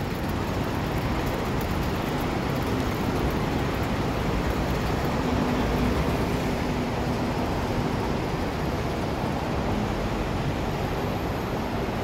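Steady hum of city road traffic, an even wash of noise with no distinct events; a faint low engine-like tone comes and goes in the middle.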